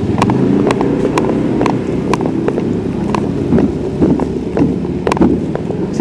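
A motorcycle engine running at low speed as the bike rolls slowly, with irregular sharp clicks about once or twice a second.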